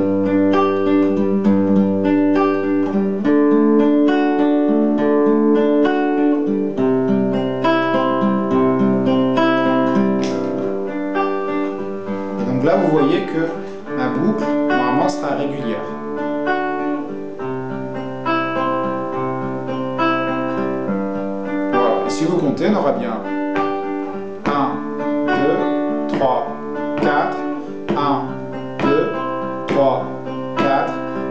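Guitar playing a repeating chord pattern, strummed and picked, recorded into a DigiTech JamMan Solo XT looper pedal and then repeating as a loop.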